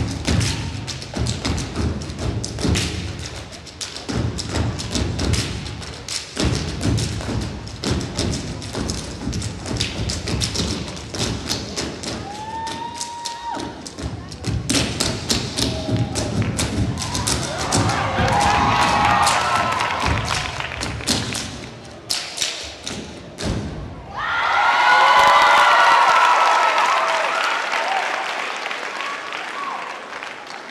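Step team stomping on a wooden stage and clapping in fast, tight rhythms, with scattered shouts from the crowd midway. Near the end the stomping stops and the crowd breaks into loud cheering and screaming that fades away.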